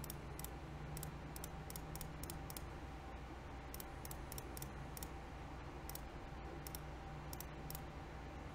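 Computer mouse clicking, a run of light irregular clicks, some close together in pairs, over a faint steady background hum.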